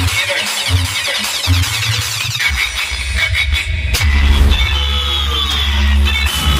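A large DJ speaker stack plays electronic dance music loudly during a sound test. Heavy bass kicks come about every 0.8 s, and about two and a half seconds in they give way to a long sustained deep bass, which is strongest from about four seconds in, under high sweeping synth tones.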